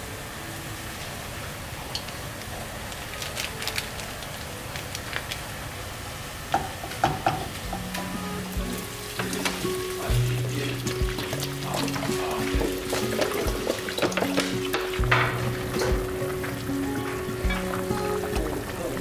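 Red-marinated meat sizzling in a nonstick wok, with a spatula scraping and clicking against the pan. About eight seconds in, soft background music with held notes comes in under the frying.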